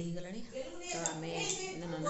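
A woman's voice, with a couple of light, sharp clinks about a second in and again shortly after.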